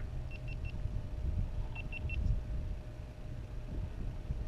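Two quick runs of three short, high electronic beeps, about a second and a half apart, over a low rumble.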